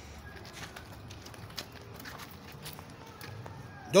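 Footsteps and scattered light knocks on concrete over faint steady background sound, with a man's voice starting at the very end.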